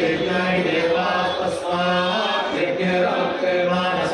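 A priest chanting Sanskrit verses read from a book, a steady recitation held mostly on one low note with short breaks between phrases.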